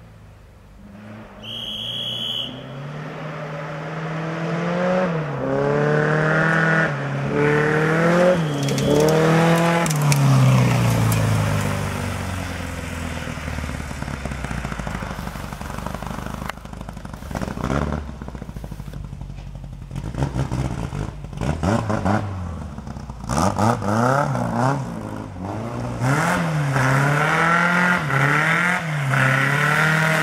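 Rally VW Beetle's air-cooled flat-four engine climbing a gravel hillclimb stage: it revs up through several gears, drops back for a while, then rises and falls quickly on and off the throttle as it comes closer. A short high tone sounds about two seconds in.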